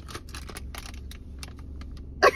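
Crinkling of a plastic-foil snack bag, a Quest Protein Chips bag, being handled and pulled at: an irregular run of small crackles.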